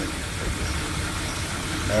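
1986 Dodge truck's carbureted V8 engine idling steadily, running again after sitting for eight years.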